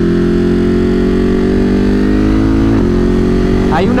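Ducati Monster 937's 937 cc Testastretta V-twin accelerating hard in second gear, its pitch rising steadily. Near the end comes a quick upshift to third, and the engine pulls on at a lower pitch.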